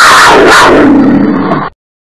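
Loud lion-roar sound effect that falls in pitch over about a second and cuts off sharply near the end.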